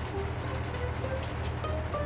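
Low, steady rumble of a cartoon tractor engine sound effect, under soft background music with a few short, faint high notes.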